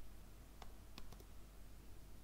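A few faint, separate clicks of computer keyboard keys being pressed one at a time, over a low steady background hum.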